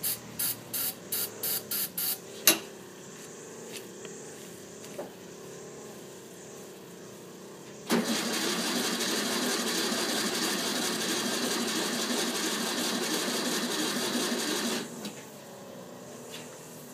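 The 1964 VW Beetle's air-cooled flat-four is cranked on the starter for about seven seconds and never fires; the owner takes the no-start for a spark or electrical-connection problem. Before the cranking, there is a quick run of short bursts and one sharp knock.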